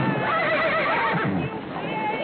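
Horses whinnying with a wavering call over the clatter of a group of horses galloping, amid shouting.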